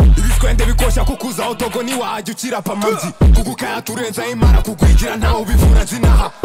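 Trap-style hip hop track with rapped vocals. A long deep bass note sounds in the first second, and a run of short, heavy bass hits starts about three seconds in.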